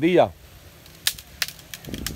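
A man's voice trails off at the start, then several faint, sharp clicks follow between about one and two seconds in.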